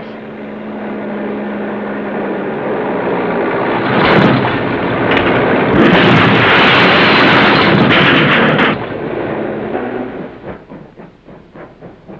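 A heap of spent brass shell casings clattering and sliding in a rope cargo net. The noise builds over the first few seconds, is loudest in the middle, then dies away with scattered clinks.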